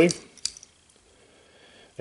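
A single light click about half a second in as small metal rotor-head parts and a hex driver are handled.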